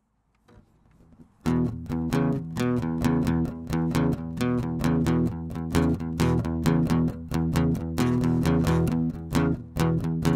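Acoustic guitar strummed in a steady, even rhythm as a song's instrumental opening. It starts about a second and a half in, out of near silence.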